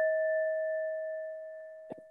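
Electronic timer's chime: a single bell-like tone, already sounding, fades slowly over about two seconds, and a faint click cuts it off near the end.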